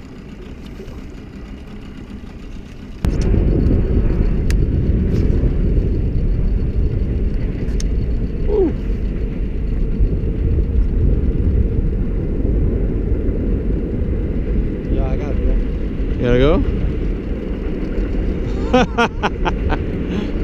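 Steady low rumble of wind buffeting an action-camera microphone on an open boat. It starts abruptly about three seconds in, with brief voices now and then.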